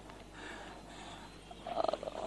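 A faint background hiss in a pause between lines of dialogue. Near the end comes a short creaky, rasping vocal sound as a person's voice starts up again.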